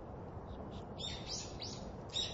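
A bird chirping in a quick series of short, high calls that each fall in pitch, starting about halfway through, over a steady low outdoor background hum.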